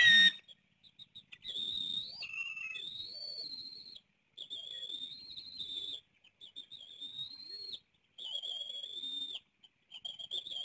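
Bald eagles calling at the nest: a loud, sudden burst right at the start, then a run of four long, high whistled calls, each lasting one to two and a half seconds with short breaks between.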